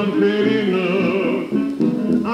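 Late-1920s dance orchestra music playing from a 1929 Gennett 78 rpm record, with a brief dip in level about a second and a half in.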